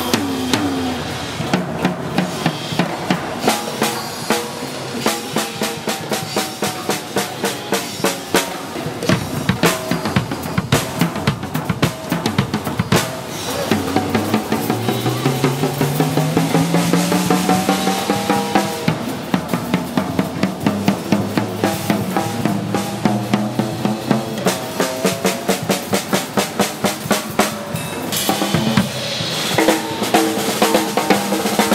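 A WTS Drums tom-tom struck repeatedly with a stick while being retuned on the fly by its single guitar-style tuning peg, so the drum's note bends in pitch between strokes and glides clearly upward about halfway through. Other drums and cymbals of the kit are played in even rhythmic strokes along with it.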